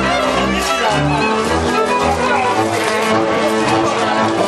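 Live Transylvanian Hungarian folk dance music from a string band: fiddles playing the melody over a bowed double bass that keeps a steady beat.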